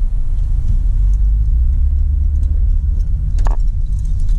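Steady low rumble of a car's engine and tyres heard from inside the cabin while driving, with a single sharp knock about three and a half seconds in.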